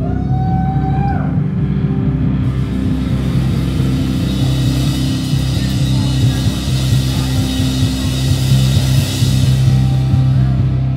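Live pop-punk band playing the opening of an intro piece: held low guitar and bass notes, with a cymbal wash swelling up toward the end. A brief gliding tone sounds about a second in.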